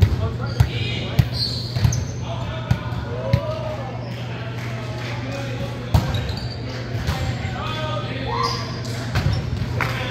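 A ball bouncing on a hardwood gym floor: four thuds about half a second apart, two more soon after, a louder one about six seconds in and a few near the end, echoing in the large hall.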